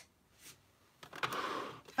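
Fabric rustling as a sewing mock-up sleeve piece is handled and smoothed flat on a table, starting about a second in and lasting nearly a second.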